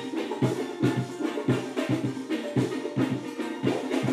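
Live soca music in an instrumental break: a drum line on snare and bass drums playing a steady, fast beat, with no singing.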